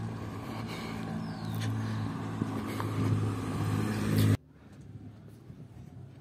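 A motor vehicle's engine running close by with a steady low hum, growing louder over about four seconds, then cutting off suddenly; fainter street sound follows.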